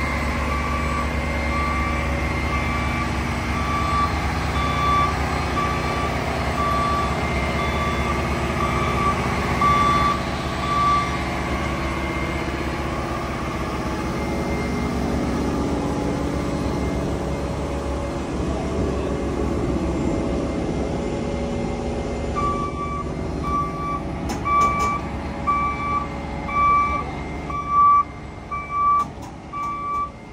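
The diesel engine of a tracked horizontal directional drill runs steadily as the machine is driven onto a step-deck trailer, with its travel alarm beeping about once a second. Past the middle the engine quietens, and a string of clanks and knocks sounds near the end while the beeping goes on.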